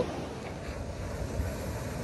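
Steady, even rush of wind and water washing among rocks, with wind buffeting the microphone.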